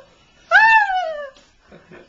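A woman's high-pitched, drawn-out 'ohh' of dismay, rising then falling in pitch, lasting under a second, about half a second in.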